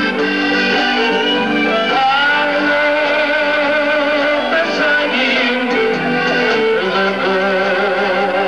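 A country band playing live: guitar with sustained melody lines and a singing voice, at an even level throughout.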